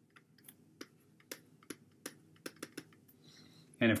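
Stylus tapping and clicking on a tablet's writing surface while a word is handwritten: about a dozen light, irregular clicks, a few a second.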